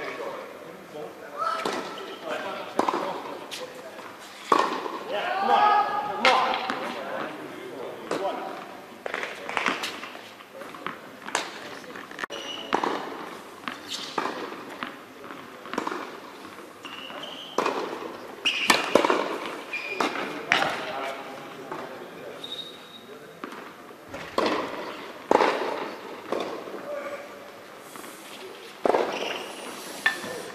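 Tennis balls being struck by racquets and bouncing on an indoor hard court during rallies: a series of sharp, irregularly spaced knocks in a large hall, with voices in the background.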